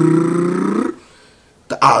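A man's voice imitating a drum roll with a rolled, fluttering "brrr", held on one pitch and cutting off about a second in.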